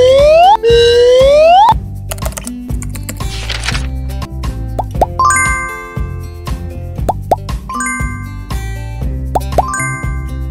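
Children's background music with cartoon sound effects laid over it: two loud rising swoops of about a second each at the start, a brief hiss a few seconds in, then pairs of short rising 'plop' blips every couple of seconds.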